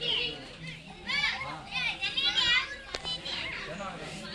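Children's high-pitched voices calling and shouting in short bursts, with a single sharp click about three seconds in.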